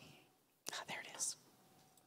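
A person whispering briefly and softly close to a microphone, for under a second about two-thirds of a second in.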